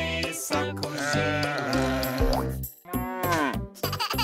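Children's song backing music with a steady beat, over which a cartoon sheep gives a long, wavering bleat about a second in, then a shorter falling cry near three seconds.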